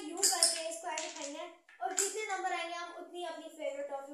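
A child's voice talking, with two sharp claps, one just after the start and one about two seconds in.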